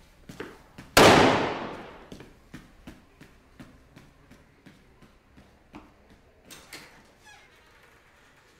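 A single loud bang about a second in, dying away over a second or so, followed by scattered faint clicks and knocks.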